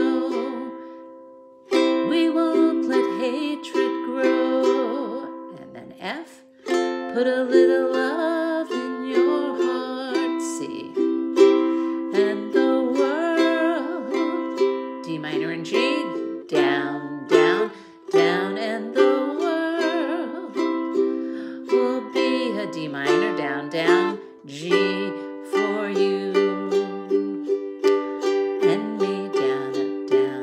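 Ukulele strummed in chords with a down-up pattern. Near the start a chord is left to ring and fade twice, then steady strumming picks up and runs on.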